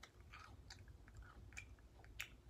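Very faint chewing of a mouthful of cereal, heard as a handful of soft, short clicks.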